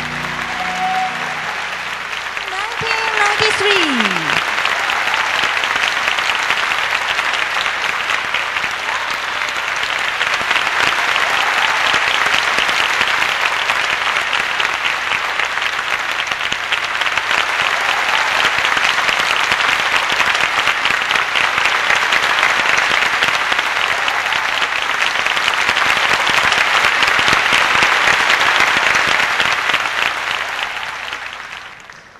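Large audience applauding, growing louder a couple of seconds in as the dance music ends and staying strong, loudest near the end. A short falling cry rises above the clapping about three seconds in.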